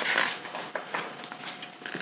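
Paper pages of a picture book being turned and handled: a short rustle near the start, then a few light clicks and scuffs of the pages.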